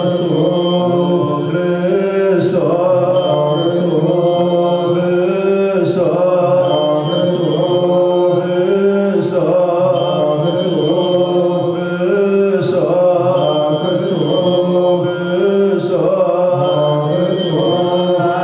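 Ethiopian Orthodox clergy chanting a prayer together: a slow, steady chant of men's voices with long held notes, shifting pitch every second or two.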